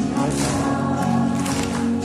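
A recorded Mandarin pop song with a group of voices singing over a steady beat, played through loudspeakers for a dance, with hands clapping along.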